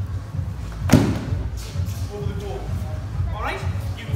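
A single heavy thud about a second in as bodies hit the gym mat during a sambo clinch-and-drive drill, with a short echo from the large hall.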